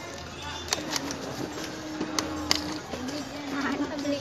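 A few sharp plastic clicks and clacks from a push-button boxing-robot toy as its two fighters are punched, over background voices.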